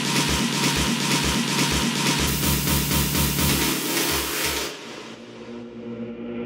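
Techno dance track: a kick drum at about two beats a second under dense hi-hats and noise, then near the end the drums and the highs cut out, leaving quieter sustained synth chords, a breakdown.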